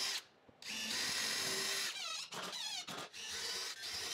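Cordless DeWalt drill/driver running under load as it drives a long exterior screw into pressure-treated 4x4 lumber. It starts with a brief spurt, then a steady run of over a second, then shorter, uneven bursts with squealing high pitches toward the end.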